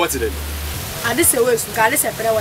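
Speech: voices talking in short phrases over a steady background hiss, with a low hum under the first part.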